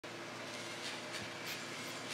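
Steady background hiss with a faint low steady tone and a few soft ticks.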